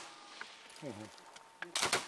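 A short burst of small-arms fire near the end, a few sharp cracks in quick succession with an echoing tail.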